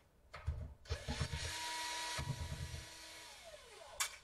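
Cordless electric screwdriver running for about three seconds, backing out a laptop bottom-cover screw. It drops in level partway through and winds down with a falling whine near the end.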